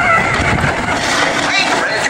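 Riding in a roller coaster car: wind buffeting the phone's microphone and the train rumbling along the steel track, with the riders' voices over it at the start and again near the end.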